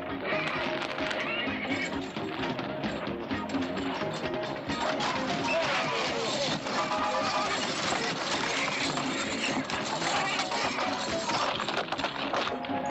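Film soundtrack of music over galloping horses, with horses whinnying and explosions going off.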